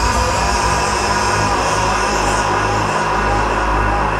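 Electronic music: a dense, sustained synthesizer chord over a deep bass drone, held steady without a beat.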